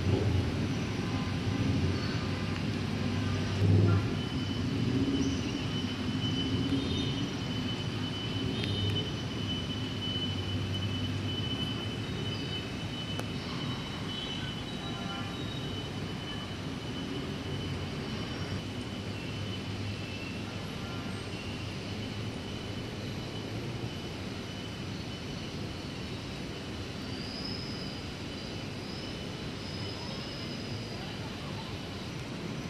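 Steady low hum of city traffic, a little louder in the first few seconds, with a thin steady high tone running through the first half.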